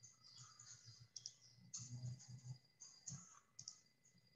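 Near silence over video-call audio: a few faint scattered clicks and taps over a faint steady high tone.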